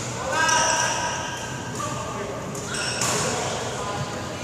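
Badminton practice echoing in a large sports hall: a voice is heard about half a second in, and a sharp racket hit on a shuttlecock sounds about three seconds in.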